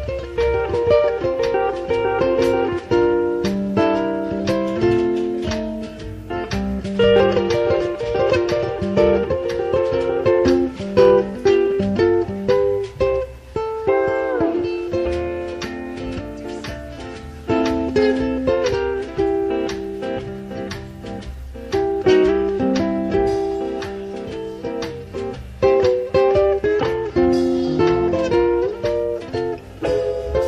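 Small live string band playing an upbeat instrumental: electric soprano ukulele and lap steel guitar carrying the tune over a wash-tub bass and drums, the steel guitar sliding down in pitch about halfway through. The tune is a cover of a 1950s saxophone instrumental hit.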